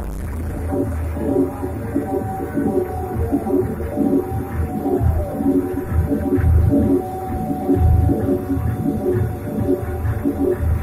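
Live electronic music played on hardware pad controllers and drum machines: low bass pulses under two held mid-range tones, with a falling glide about five seconds in.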